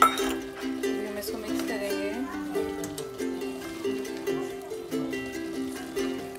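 Background music with a plucked, ukulele-like melody. A sharp clink at the very start comes from the wooden spatula knocking the steel pressure-cooker pan while stirring.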